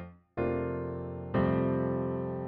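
Native Instruments' The Grandeur sampled concert grand piano playing. A short, clipped note dies away at the start, then a note is struck and held, and a second one joins about a second later and rings on.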